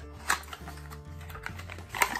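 Small cardboard product box being opened and handled: a run of light taps, clicks and paper rustles, the loudest about a third of a second in, over background music.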